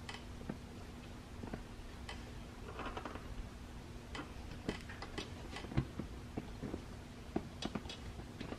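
Faint, irregular clicks and taps of a knobby bicycle tyre and its rim being handled as the tyre bead is pressed onto the rim by hand.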